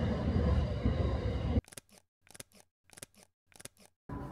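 Train running, a steady low rumble, which cuts off abruptly about a second and a half in. Four camera shutter clicks follow in even succession, each a quick double click, about two-thirds of a second apart.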